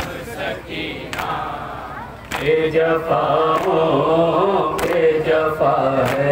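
Men's voices chanting a noha (Shia mourning lament) over a public-address system. The chanting is softer at first and comes in fuller and louder a couple of seconds in. Sharp slaps about once a second mark the beat of matam, hands striking chests.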